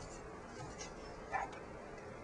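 Quiet room tone, with one brief, faint sound about two-thirds of the way through.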